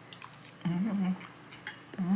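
A woman's short closed-mouth "mm" of approval as she tastes a spoonful of food, a little after half a second in. A few faint clicks of a spoon come before and after it.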